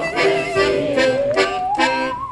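Piano accordion chords with a harmonica and a bowed musical saw playing the melody; the saw's wavering tone slides upward near the end.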